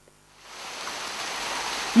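Splashing water from an outdoor fountain, a steady rushing hiss that fades in over the first second.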